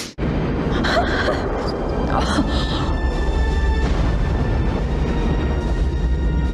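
Movie soundtrack of a Saturn V rocket launch: a heavy, continuous low rumble that cuts in suddenly at the start, with orchestral music playing over it.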